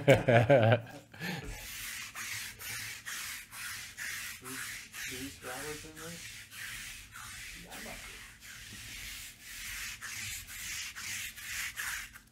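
A hand rubbing back and forth on a surface in short, even strokes, about two a second, after a brief laugh at the start.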